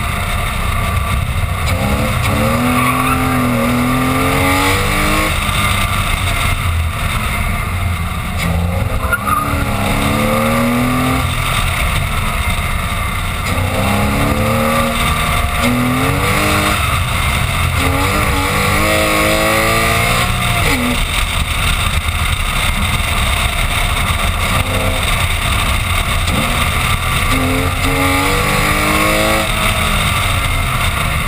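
Porsche Boxster S engine pulling hard through the revs about five times, its pitch climbing on each pull and dropping back at the shift or lift, over steady wind and tyre noise from the side of the moving car.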